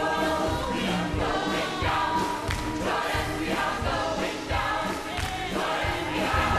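Mixed gospel choir singing in full voice, with lead singers on handheld microphones, backed by a big band with a steady beat.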